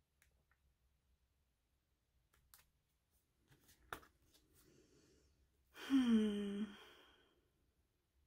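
Sticker-book pages turned by hand, with light paper rustling and one sharp snap of a page, then a short voiced sigh that falls in pitch, the loudest sound.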